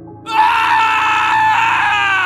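A person's high-pitched scream, held steady for about two seconds, then sliding down in pitch as it cuts off.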